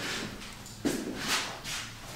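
A few soft footsteps on a hard floor.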